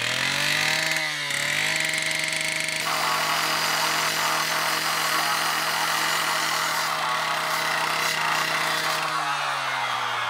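Petrol disc cutter rising to full revs over the first second or so, then running steady while its blade cuts through a concrete paving slab, a gritty hiss of cutting over the engine from about three seconds in. It winds down near the end.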